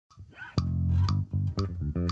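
Muckelroy Abby 5, a 31-inch short-scale five-string electric bass, played fingerstyle: a held low note starting about half a second in, then a run of shorter notes, each with a crisp attack.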